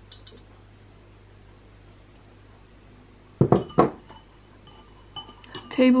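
Metal teaspoon clinking against a ceramic bowl of coffee while stirring: two sharp clinks a little after halfway that ring briefly, then a few lighter taps.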